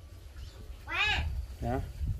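Two short, high squeals from young pigs, one about a second in and a lower, shorter one just after.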